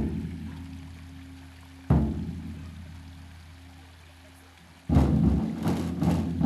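Traditional Hakka flower-drum percussion: two single deep strikes about two seconds apart, each ringing and slowly dying away, then the ensemble of big drum, gong and cymbals starts playing together near the end.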